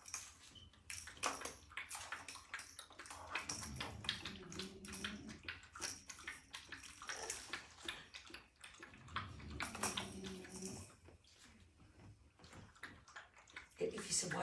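Puppies playing with and chewing a rattling toy: irregular rustling, clicking and rattling, with a few short low puppy whines.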